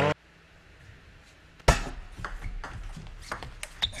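Table tennis rally: a celluloid ball clicking off rackets and the table. After a quiet start comes one loud sharp knock, then a run of lighter clicks about three a second.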